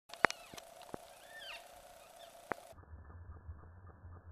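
Birds in gum woodland give a few short, arching whistled calls about a second in, among sharp clicks, over a faint steady hum. Near the end the sound changes abruptly to a dull low rumble with a few knocks.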